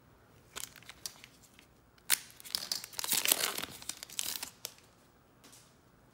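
A trading card pack's wrapper being torn open and crinkled by gloved hands. A few light clicks come first, then a sharp tear about two seconds in and about two and a half seconds of crinkling.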